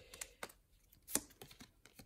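Pokémon trading cards being flicked through in the hands, card edges snapping against each other in a string of quick, sharp clicks, the loudest a little over a second in.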